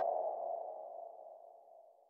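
Tail of an electronic outro sting: a single mid-pitched synth tone fading out over about two seconds.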